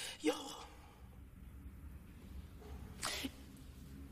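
A few short, breathy vocal sounds from a woman with quiet room tone between them: a brief rising syllable near the start, then a sharp breathy burst about three seconds in.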